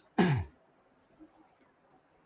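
A man clears his throat once, briefly and loudly, with a falling pitch, then quiet room tone.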